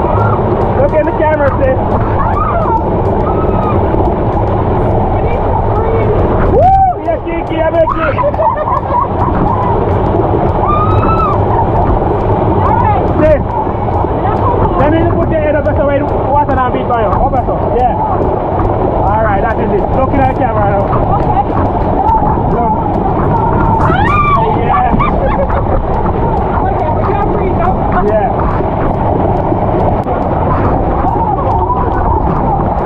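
Waterfall pouring loudly onto and past the microphone in a steady rush, with people's voices calling and shouting throughout.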